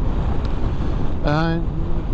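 Ducati Multistrada V4S under way at a steady cruise of about 90 km/h: a dense, low rush of wind and road noise mixed with the V4 engine's running. About a second in, the rider makes a brief hummed hesitation sound.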